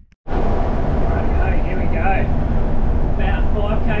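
Steady rumble of a large 61-seat passenger bus's engine and road noise, heard from the driver's seat while driving. It starts abruptly just after a brief silence.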